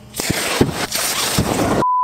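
An RC car's battery pack failing and venting: a harsh, hissing rush with crackles that starts suddenly, the overheating that a temperature-monitoring charger is meant to prevent. Near the end it cuts off abruptly to a steady 1 kHz test-tone beep.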